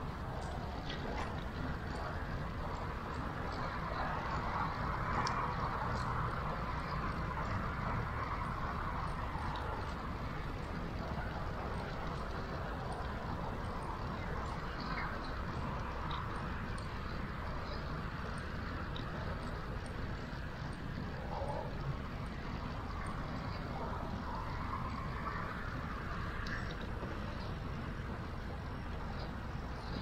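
Steady rushing noise of riding a bicycle along a paved path: wind on the microphone and tyres rolling on asphalt, a little louder for a few seconds near the start.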